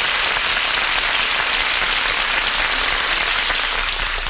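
Studio audience applauding steadily, a dense even clapping.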